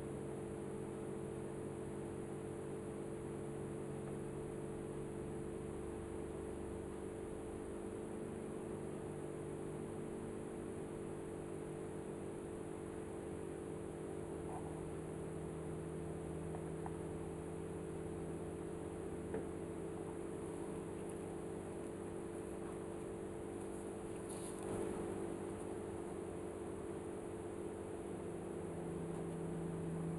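A steady low electrical hum over faint room hiss, with a faint click a little past the middle and a brief soft scuff a few seconds later.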